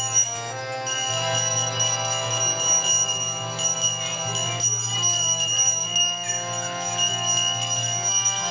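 Kirtan instrumental passage between chanted lines: a harmonium holds chords that shift every second or two over a steady drone, while karatals (small brass hand cymbals) strike in an even rhythm and keep ringing.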